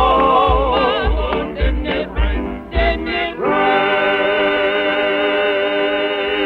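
Southern gospel vocal group of mixed voices singing with piano over a steady low beat, then about halfway through all the voices hold one long final chord with vibrato to end the song.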